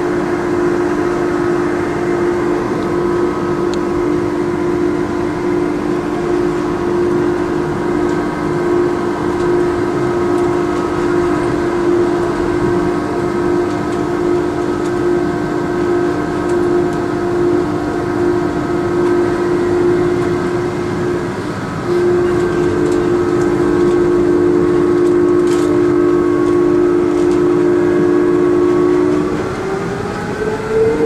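Von Roll Mk III monorail train running, heard from inside the car: a steady electric whine over rumbling running noise. About two-thirds of the way through it briefly drops, then comes back louder. Near the end the whine rises in pitch.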